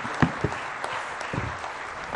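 Audience applauding, a steady patter of many hands clapping that thins out slightly near the end.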